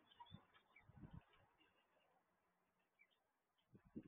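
Near silence: faint outdoor room tone picked up by a security camera's microphone, with a few soft, brief sounds in the first second or so.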